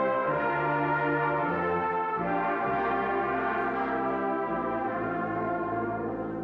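Church brass choir (Posaunenchor) of tubas, horns and trombones playing sustained chords, the harmony moving on about every second or so.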